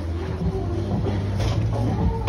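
Bowling-alley room sound: background music over a steady low hum, with no distinct impacts.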